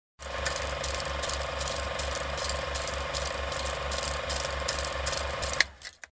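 Steady mechanical ticking, about three ticks a second, with a low pulse on each tick, cut off abruptly shortly before the end.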